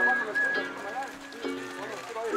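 Music with held, chord-like notes that change every half second or so and a higher held melody line above them, with voices in the background.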